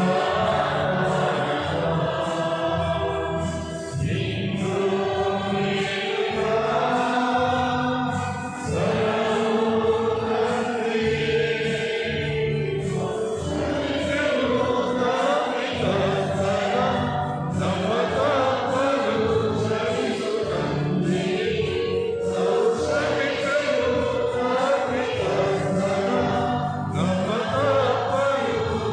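A choir singing a hymn with musical accompaniment, the voices holding and moving through sustained notes without a break.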